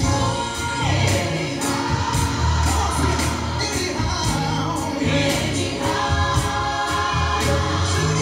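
Gospel song with several voices singing together over a bass line and a steady drum beat.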